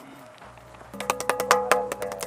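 Hand tapping and smacking on a granite block: a quick run of sharp knocks that starts about a second in, with the stone ringing at a steady pitch underneath.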